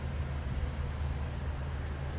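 Steady low hum of a vehicle engine idling, unchanging throughout.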